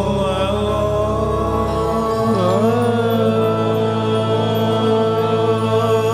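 Male classical vocalist singing long held notes with slow slides in pitch, in a slow opening passage with no drumming, over a steady drone.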